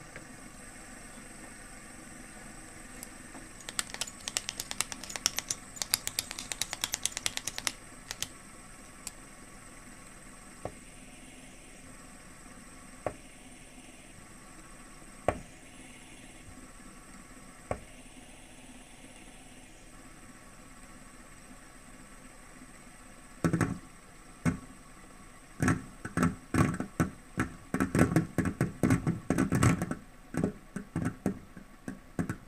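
A metal fidget spinner being spun and handled on a glass tabletop, making bursts of rapid clicking ticks. A few single clicks come in the middle, and a denser, louder run of clicks and taps comes in the last several seconds.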